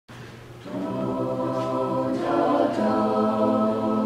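Mixed-voice a cappella group singing held chords: a quiet low note first, then the full ensemble comes in about half a second in, and the chord changes a little past two seconds.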